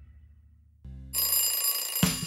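The last of a song's music fading out, then a short low hum and, about a second in, a cartoon alarm clock bell ringing, a bright, steady high ring.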